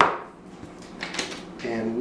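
Kitchen items handled on a countertop while spices are measured: one sharp knock at the start with a short ring, then a few light clicks about a second in.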